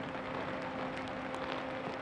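Steady hiss of rain falling on a waterlogged football pitch, with a few faint ticks of drops and a constant low hum underneath.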